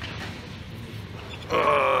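A man's short, steady voiced grunt or hum, about half a second long, near the end. Before it there is only a low steady background hum.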